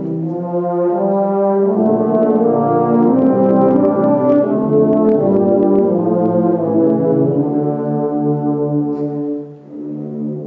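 A massed choir of tubas and euphoniums playing a Christmas carol in full sustained chords, with a short break between phrases near the end before the low brass comes back in.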